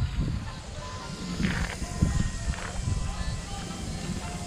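Background music, quiet, over a low irregular rumble.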